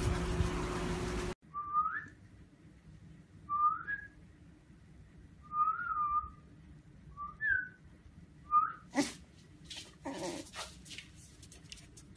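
About a second of loud, dense noise cuts off suddenly. Then come five short rising whistles, a couple of seconds apart, each a clear high note that slides upward. Near the end, two short sharp sounds follow.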